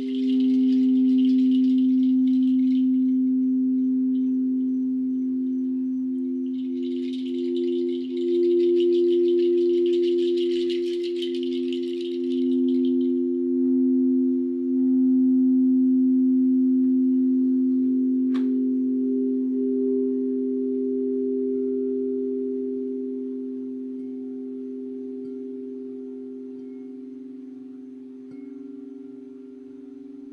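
Frosted quartz crystal singing bowls sounding two steady tones that waver as they beat against each other, fading slowly over the second half. A high jingling shake comes twice, at the start and again from about seven to thirteen seconds in, with a single sharp click about eighteen seconds in.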